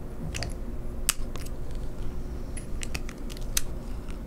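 Scattered light clicks and handling of a magnetic quick-release adapter being snapped onto a silicone-coated neck mount and twisted off.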